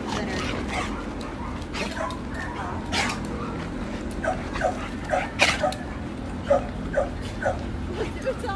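Pit bull-type dogs playing, giving a string of short barks and yips, most of them in the second half.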